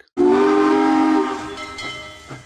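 Train whistle sound effect: a chord of several steady tones over a hiss, starting suddenly and fading away over about two seconds.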